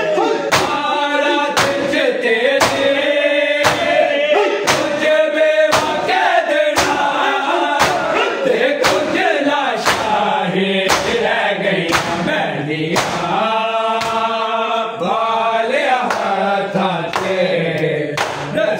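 Male voices chanting a noha in unison, kept in time by the mourners' hand slaps on their bare chests (matam), about two strikes a second.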